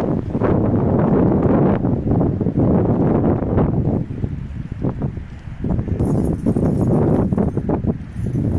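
Wind buffeting the microphone: a heavy, gusting low rumble that eases for a moment about four to five seconds in.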